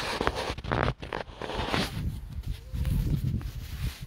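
Handling noise from a phone held at arm's length to record: irregular rustles and bumps with a low rumble.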